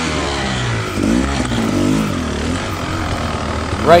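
Dirt bike engine rising and falling in pitch with the throttle, several short revs at low speed while the bike is ridden over rocks.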